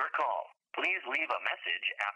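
Speech heard through a telephone: a voice talking, thin and narrow-sounding, with a short pause about half a second in.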